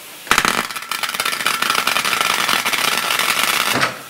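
Lenox butt welder flash-welding the two ends of a steel bandsaw sawmill blade together: a loud, dense crackling that starts suddenly just after the start and stops abruptly shortly before the end, about three and a half seconds long.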